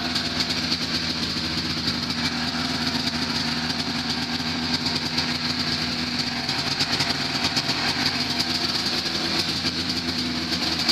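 Ski-Doo Blizzard 5500 snowmobile's 503 cc two-stroke twin idling steadily with an even, rapid exhaust beat and no revving.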